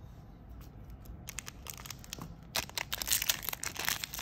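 Foil wrapper of a Magic: The Gathering Ultimate Masters booster pack crinkling and crackling as it is handled and torn open. It is faint at first and thickens into a dense run of crackles from about halfway through.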